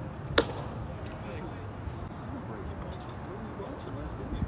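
A single sharp, loud pop about half a second in: a baseball smacking into a leather glove, over a steady ballpark background with faint distant voices.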